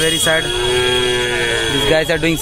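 One long drawn-out call lasting over a second, a single pitched sound that rises slightly and then falls away.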